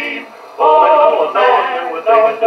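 Vocal quartet singing in harmony, reproduced from an Edison Diamond Disc record on an Edison disc phonograph. A short lull comes about half a second in, then a long held chord.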